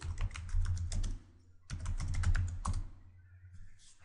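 Keystrokes on a computer keyboard: rapid clicks in two quick bursts of about a second each with a short pause between, typing a short command line and pressing Enter; the typing stops about three seconds in.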